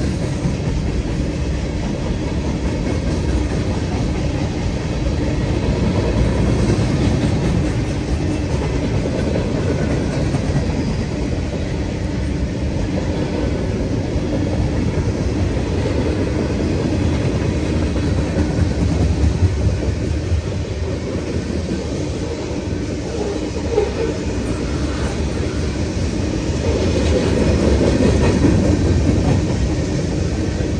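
CSX freight cars rolling steadily past at a grade crossing: a continuous low rumble of steel wheels on rail, with clickety-clack rattling that swells and eases as the cars go by.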